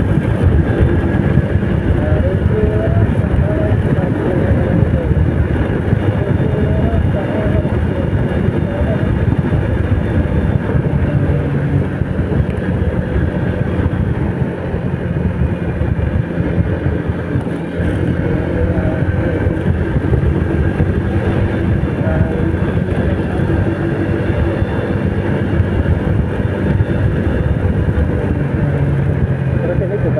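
An old Yamaha Vega's single-cylinder four-stroke engine running steadily while the motorcycle is ridden along a road, with heavy wind and road rumble on the mic.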